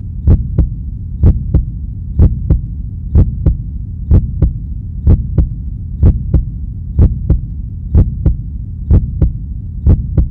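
A deep double thump, heartbeat-like, repeating about once a second over a steady low hum, laid on the soundtrack as an effect.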